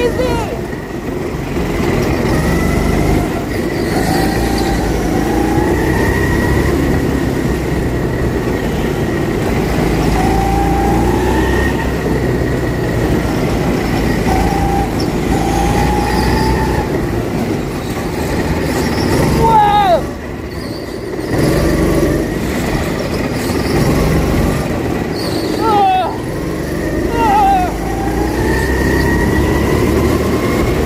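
Go-kart engine running hard, its pitch rising again and again as the kart accelerates along the track. A few short, sharp, high-pitched squeals stand out, one about two-thirds of the way in and two more near the end.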